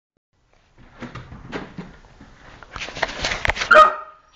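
Handling noise from objects being moved about: a scatter of clicks and scuffs from about a second in, then louder rustling and scraping, ending in a short high-pitched tone.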